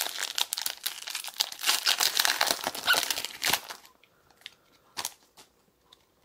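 Foil Pokémon booster pack wrapper crinkling and crackling as it is opened by hand, for about three and a half seconds. A few light clicks from handling the cards follow near the end.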